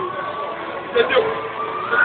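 Audience voices calling out over a long held tone, with two short shouts about a second in.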